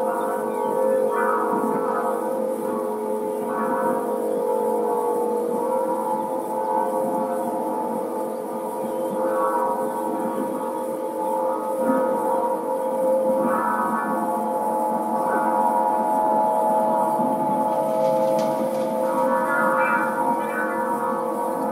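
Aeolian wind harp tuned to A=432 Hz, its strings sounding in the wind as a drone of several held tones. Higher overtones swell in and fade again every few seconds.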